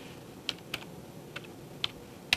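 Keys tapped on a handheld keyboard: four light, separate clicks at uneven intervals.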